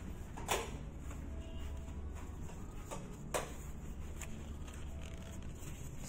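Hotel room door's electronic key-card lock and handle being worked: two sharp clicks about three seconds apart over a steady low hum.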